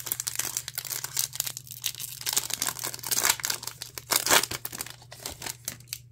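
Foil trading-card pack wrapper being torn open and crinkled by hand, a continuous crackling with sharper rips, stopping near the end as the cards come out.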